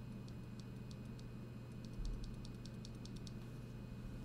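Faint, light clicking of a loose NovelKeys Cream mechanical keyboard switch lubed with Glorious G-Lube, pressed and released by hand. The clicks come about three a second at first and quicken to six or seven a second after a soft low bump halfway through, then stop shortly before the end.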